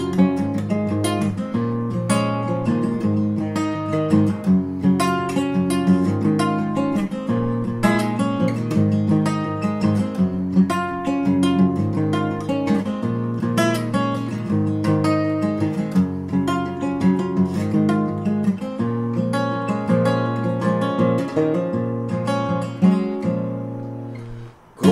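Solo acoustic guitar playing the instrumental intro, a steady rhythmic pattern of picked and strummed chords with several note attacks a second, easing off just before the end.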